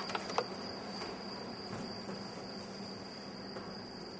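Quiet stage room tone with a steady high-pitched whine throughout. A few light knocks come in the first half second, the kind of sound footsteps on the stage boards would make.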